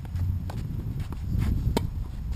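Tennis rally on a hard court: a few light knocks of ball and shoes, then a sharp pop of a racket striking the ball on a forehand near the end, over a low steady rumble.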